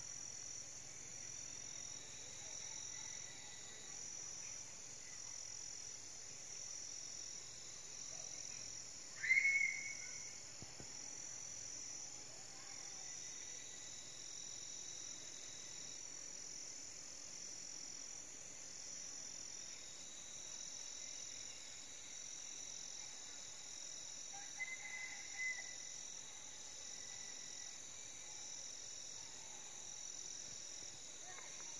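Steady high-pitched insect chorus, pulsing in a slow, even rhythm over a fainter unbroken tone. About nine seconds in a short, loud, high call cuts through, and a few fainter short calls come near the 25-second mark.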